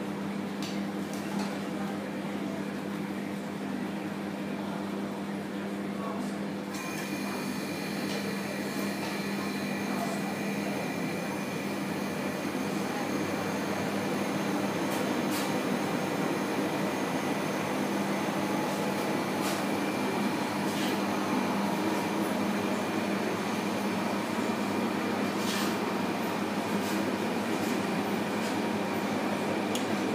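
A steady machine hum with a low drone throughout. About seven seconds in, a second, higher-pitched whine joins it and runs on.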